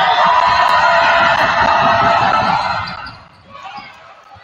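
Gymnasium crowd yelling loudly during a free throw in a close game, with low thuds of a basketball bouncing on the hardwood floor underneath. The noise dies down suddenly about three seconds in as the shot goes up.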